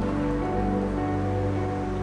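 Background music of soft, held chords, with a new note coming in about half a second in.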